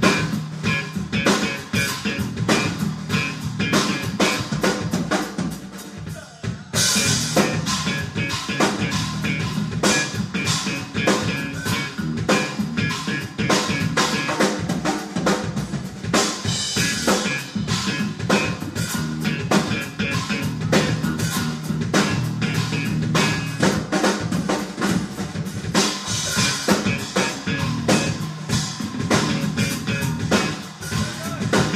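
Live three-piece rock band playing an instrumental funk-blues groove, the drum kit to the fore over bass and electric guitar. About six seconds in the music dips briefly, then comes back fuller and brighter.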